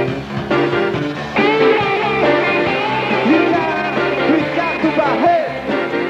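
Rock band playing live, with bass and chords under a lead melody of bending, gliding notes that comes in about a second and a half in.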